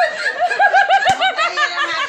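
Women laughing together, with a fast run of rhythmic 'ha-ha-ha' laughs in the first second. A single short knock sounds just past the middle.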